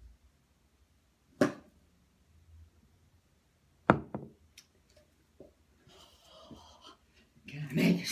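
Two sharp clicks about two and a half seconds apart from putting on carpet: a golf putter striking a golf ball, and the ball or club knocking, the second click the louder. A voice starts near the end.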